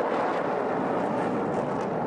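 Military jets flying over, a steady rushing jet noise.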